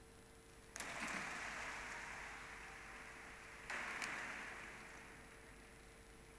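Faint audience applause in two short bursts about three seconds apart, each starting suddenly and dying away over a second or two.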